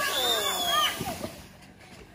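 Children's excited high-pitched shouts and squeals, fading out after about a second and a half.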